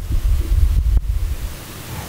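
Uneven low rumbling of air buffeting the microphone, over a faint steady hiss, with a light click about a second in.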